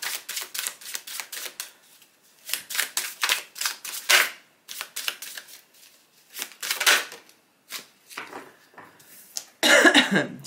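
A deck of tarot cards being shuffled by hand: rapid runs of card clicks in about five bursts with short pauses between, one louder snap about four seconds in. A woman's voice starts right at the end.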